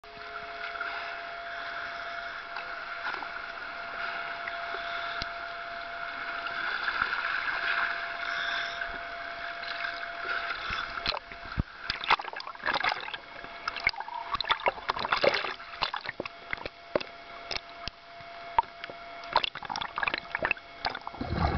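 Underwater sound picked up through a diver's camera housing: a steady hiss with a faint steady tone for roughly the first half, then irregular sharp clicks, knocks and bubbly bursts as the water surges around the rocks.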